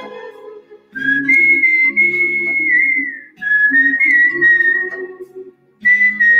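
A person whistling a song melody through the lips over an instrumental backing track. Two sustained, high phrases of about two seconds each are separated by a short break, and the sound drops out briefly just before the end.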